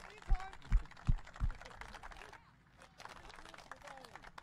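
Four dull, low thumps in quick succession, a little under half a second apart, in the first second and a half, over faint background voices.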